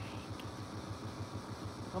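A steady low hum with a fast, even flutter, heard in a pause between the commentator's calls.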